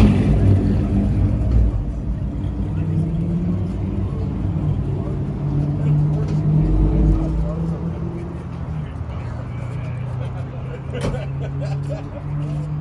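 A car engine idling with a steady low rumble, swelling slightly in the middle.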